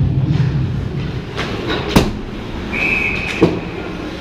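Ice hockey play heard at rink level: skates scraping on the ice and a sharp crack of stick or puck about two seconds in, then a brief high steady tone and a second, softer knock shortly before the end, over the steady rumble of the arena.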